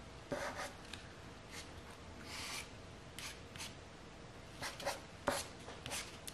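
Soft pastel stick rubbing and scratching on paper in short, separate strokes, faint, with a sharp little tick about five seconds in.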